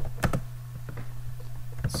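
Typing on a computer keyboard: a few separate keystrokes, most of them close together near the start and one or two more about a second in.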